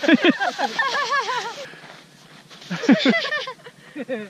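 People laughing in two bouts of quick, rising-and-falling 'ha' sounds, one at the start and another about three seconds in.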